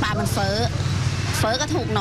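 A woman talking in Thai over a steady low background rumble.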